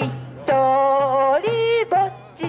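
A woman singing long held notes through a handheld microphone and loudspeaker, with one upward step in pitch near the end. Under the singing a small hand drum keeps a light beat about twice a second.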